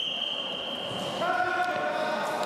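Voices calling out in a large, echoing sports hall. A steady high-pitched tone cuts off about a second in.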